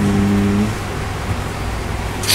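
A short held 'mmm' hum in a voice, steady in pitch, lasting under a second at the start, over a steady low background hum that runs on after it stops.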